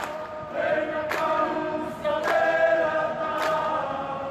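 A Fijian rugby league team singing together in harmony in long held chords, with a sharp hit about once a second.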